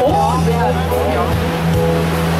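Amplified live music from a singer and bass guitar, with the chatter of guests at nearby tables.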